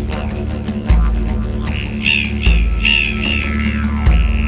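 Didgeridoo music: a steady low drone that swells with a stronger pulse about every second and a half, with higher, voice-like overtone calls riding above it in the second half.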